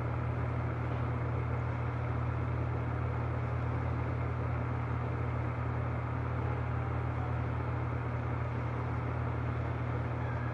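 A steady low mechanical hum with an even rushing noise over it, holding a constant level.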